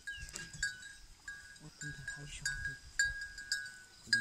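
A bell hanging from a zebu bull's neck strap clinking about twice a second, each strike short and ringing at a single pitch.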